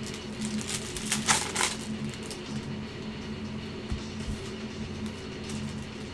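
Trading cards being handled and flipped through, with a brief papery rustle about a second in, over faint steady background music.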